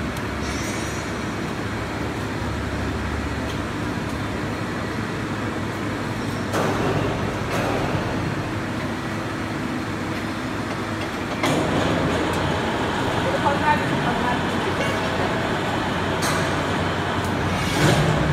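Steady mechanical rumble of workshop machinery, getting a little louder about two thirds of the way through, with a few sharp knocks scattered through it.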